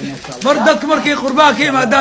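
Speech: people's voices talking, with no other distinct sound; the voices dip briefly near the start.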